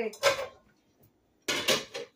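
Kitchen cookware clattering: two sharp metallic clanks of pots or utensils at the stove, one just after the start and a louder one about a second and a half in.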